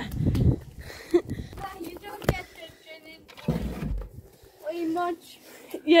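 Faint voices, with dull low thumps near the start and again about three and a half seconds in, and one sharp knock just after two seconds.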